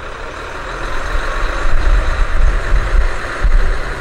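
Diesel railcars of the Kazekko Soya event train pulling out of the station, a deep engine rumble that grows louder from about half a second in.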